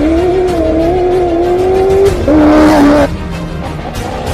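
Ford Ranger rally-raid truck's engine at full throttle, its pitch rising as it accelerates, with a gear change about two seconds in that brings the pitch down. The sound drops away suddenly about three seconds in.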